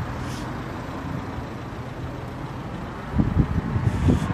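Steady outdoor background rumble with wind on the microphone, buffeting in low gusts about three seconds in.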